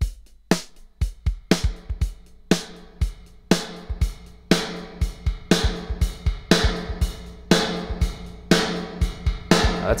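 Programmed drum-kit loop (Addictive Drums 2) played through a homemade plate reverb turned up high: steady kick, snare and cymbal hits, the strongest about once a second, each trailing off in a long, bright reverb tail. The heavy reverb with its high-frequency sparkle is the upgraded plate's sound.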